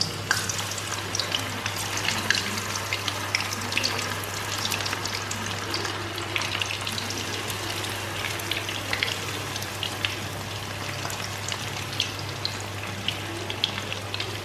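Batter-coated cauliflower pakoras deep-frying in hot oil in a kadai: a steady sizzle thick with small crackling pops. A low steady hum runs underneath.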